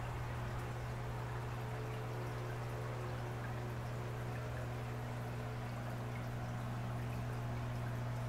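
Aquarium filter running: a steady hum under a soft, even trickle of water.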